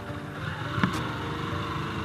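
Yamaha YBR-G's 125 cc single-cylinder four-stroke engine running at low revs while riding slowly over a rocky trail, with a sharp knock a little under a second in.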